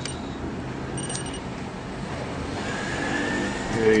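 Steady low mechanical hum of machine or room noise, with two short, faint, high electronic tones: one at the start and one about a second in.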